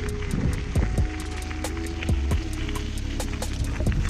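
Mountain bike rolling over a gravel track: a low rumble of tyres and wind on the microphone, with frequent irregular clicks and rattles from stones and the bike, and a few held steady tones.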